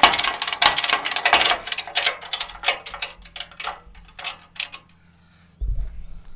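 Metal ratchet buckle of a tie-down strap clicking and clattering as it is worked by hand: a rapid run of clicks, then single clicks a couple of times a second that stop a little before the end. A low thump follows near the end.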